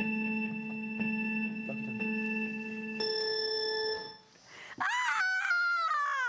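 An electronic signal tone holds one steady note for about three seconds, then a higher note for about a second. Near the end a high voice whoops, its pitch rising and then falling.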